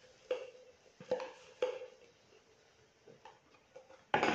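A metal spoon tapping three times on the Thermomix's stainless-steel mixing bowl, each tap with a short metallic ring, as a spoonful of paprika is knocked in. Fainter knocks follow near the end.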